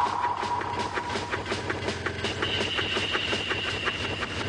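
Fast, even clicking, about six clicks a second, under a held high tone that steps up to a higher one about halfway through.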